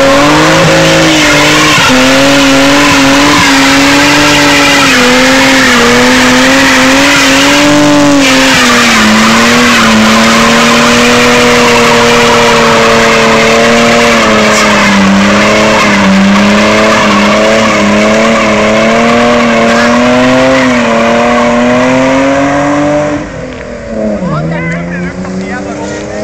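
A BMW 325's straight-six engine held at high revs through a burnout, the revs wavering a little, over the loud hiss and squeal of spinning rear tyres. Near the end the revs drop and the sound gets quieter.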